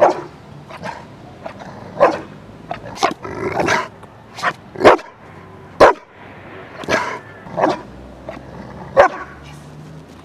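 A Rottweiler barking on command: about a dozen short, sharp barks at irregular intervals, roughly one a second, some coming in quick pairs.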